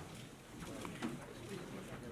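Low murmur of voices in a crowded room, with a few faint clicks.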